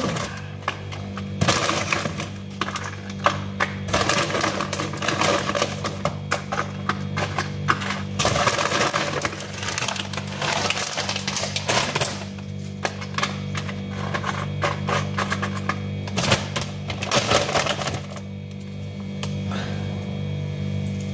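A crinkly snack bag being handled and tortilla chips rattling and crackling as they are tipped and moved about, in irregular bursts that ease off near the end. A steady low hum runs underneath.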